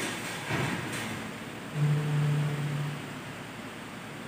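Steady room noise, an even hiss, with a person's short held hum a little under two seconds in, lasting about a second.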